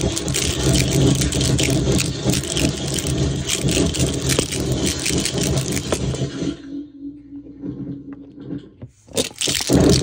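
Mantic Hivemind fuzz pedal (a DOD Buzzbox clone), fed by a shaker box and with its knob turned to max, putting out a dense crackling harsh-noise fuzz over a low hum. The noise cuts out about six and a half seconds in and comes back loud near the end.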